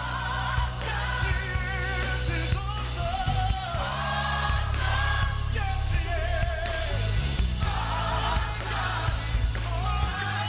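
Live gospel music: a church choir singing together with a male lead vocalist, over a band with a steady bass line.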